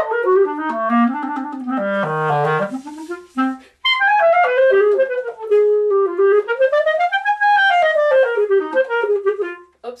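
Solo clarinet playing a slow, languid melody. The line dips into the low register about two seconds in and breaks for a short breath just before four seconds. It then plays a smooth phrase that rises and falls back, breaking off near the end with a spoken 'oops'.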